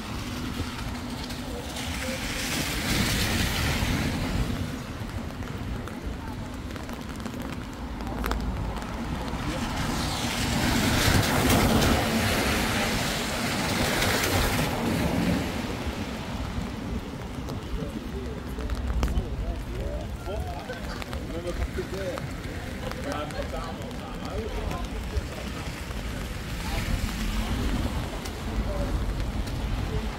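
Wet-street traffic: the tyre hiss of cars passing on a rain-soaked road swells and fades twice, about two seconds in and again around ten seconds in, over a steady low rumble of wind on the microphone.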